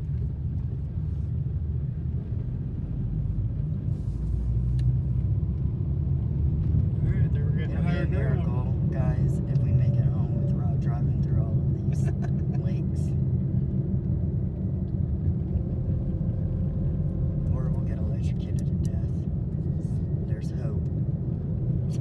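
Steady low rumble of a car's engine and tyres heard from inside the cabin while driving. Faint voices come through in the middle.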